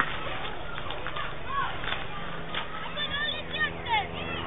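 Indistinct background chatter of other people, with a faint steady hum coming in during the second half and some quick high-pitched calls near the end.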